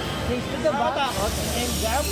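A steady hiss that grows brighter about halfway through, with high children's voices calling in the background.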